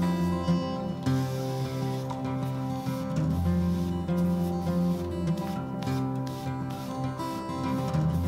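Background music led by acoustic guitar, with sustained chords changing every couple of seconds.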